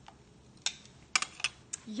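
A few light clicks and taps of kitchen utensils being handled and set down on a wooden cutting board. There is one click about two-thirds of a second in, a quick cluster a little after a second, and two more near the end.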